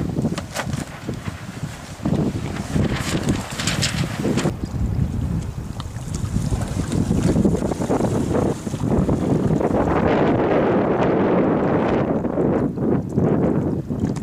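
Gusty wind buffeting the microphone, heavier and steadier in the second half. A few short rustling clicks sound in the first few seconds.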